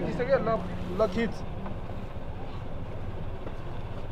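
Street background with people talking briefly at the start, over a low, steady idling vehicle engine that fades out about two seconds in.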